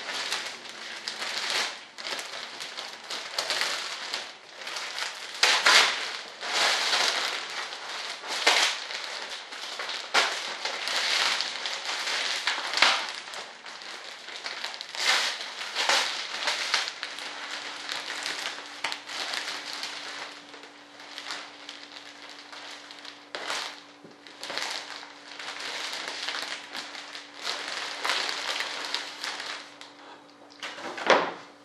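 Clear plastic vacuum-bag film crinkling and crackling in irregular bursts as it is peeled and pulled off a composite layup by hand. A faint steady hum comes in about halfway through.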